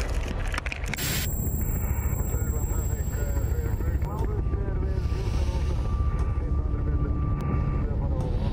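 Helicopter rotor thudding in a steady, pulsing low rumble, with voices over it.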